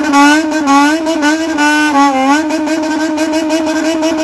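Motorcycle engine revved and held at high revs, its pitch wavering up and down as the throttle is worked.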